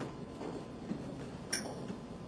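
Footsteps of a dancer on a wooden studio floor: a few faint scattered taps and a sharper click about one and a half seconds in, over a faint steady hum.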